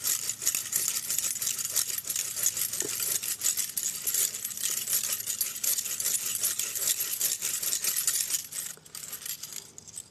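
A bare bow-saw blade held in the hand, sawing a slit into the end of a green river birch stick. It makes a high, rasping scrape of rapid short strokes that eases off near the end.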